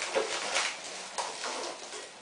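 A white mailing envelope being torn and rustled open by hand, in several short ripping strokes.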